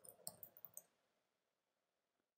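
Near silence with about five faint computer-keyboard keystroke clicks in the first second, as a short terminal command is typed.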